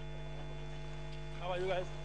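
Steady electrical mains hum with a stack of overtones, with a faint voice showing through briefly near the end.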